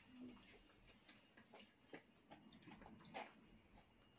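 Near silence with faint, irregular clicks and scrapes of a spoon in a foam bowl as someone eats.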